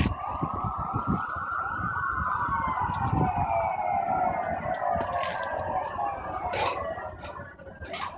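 Emergency vehicle siren: one long wail that rises in pitch for about two seconds, then slowly falls over the next five. A couple of sharp knocks sound near the end.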